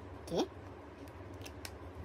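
A few faint, light clicks in the second half, from a hand handling markers and a tablet on a plastic desk tray.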